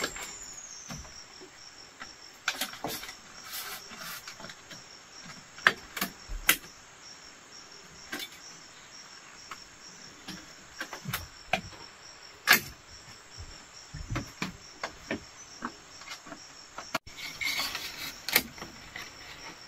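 Steady high-pitched chirring of insects, with scattered sharp knocks and clicks of bamboo being handled, the loudest at about six seconds and again halfway through.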